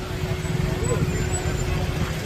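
Low engine rumble of an SUV rolling slowly at walking pace, with scattered voices of people nearby.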